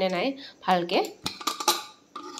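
A few spoken words, then a handful of sharp metal clicks and clinks from a pressure cooker's lid and locking handle being handled, in the second half.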